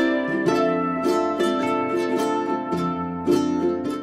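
Background music on a plucked string instrument, ukulele-like, picking out a light run of notes over steady chords.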